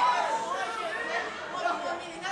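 Speech only: several high-pitched voices talking over one another in a chatter.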